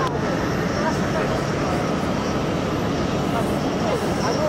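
Twin-engine regional jet's turbofan engines running at a steady level while the aircraft taxis and turns, heard as an even rumbling hiss.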